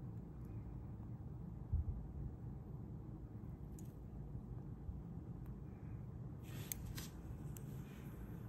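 Quiet handling of a metal brooch in the fingers: a few light clicks and rustles, most of them in the last couple of seconds, over a steady low room rumble, with a single dull low thump about two seconds in.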